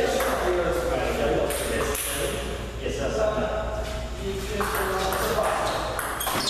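Table tennis rally: the celluloid ball clicking off rubber paddles and the Stiga table in a quick back-and-forth, over people talking.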